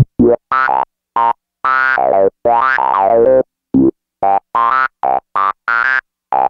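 Novation Bass Station II analog monosynth playing a preset: a run of short, separate notes with a bright, buzzy tone and silent gaps between them, and one longer note near the middle that sweeps down in tone.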